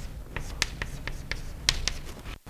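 Chalk on a blackboard while a formula is written: a quick, uneven series of sharp taps as each symbol is struck, the loudest near the end.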